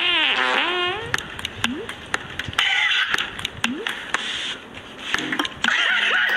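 A long, wobbling fart noise during the first second, let off as a prank while the other person is leaning in to check her back. Laughter breaks out near the end.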